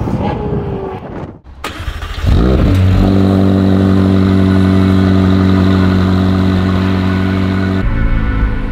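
McLaren 765LT's twin-turbo V8 engine rises quickly in pitch about two seconds in, then runs at a steady fast idle. The running is loud and even.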